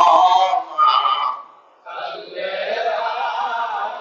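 A man's voice chanting in a drawn-out, sung style, with a short break about a second and a half in.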